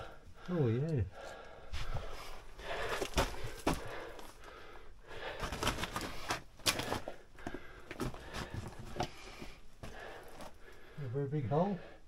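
Someone scrambling over loose rock and debris: irregular knocks, scrapes and crunches of boots and hands on stone. A short wavering vocal sound comes about half a second in and another near the end.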